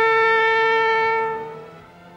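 A horn blown as a warning signal: one long, steady note that fades out about a second and a half in.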